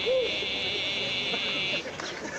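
A person's voice gives a short hoot that rises and falls, over a high, wavering held tone that stops shortly before the end.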